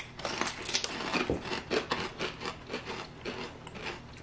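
Two people chewing kettle-cooked sweet chili crisps with their mouths closed, giving a quick, irregular run of crunches.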